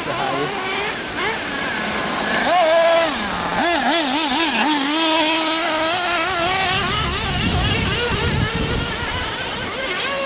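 Nitro RC buggy engine running at high revs, its note rising and falling with the throttle and wavering quickly up and down for a second or so near the middle.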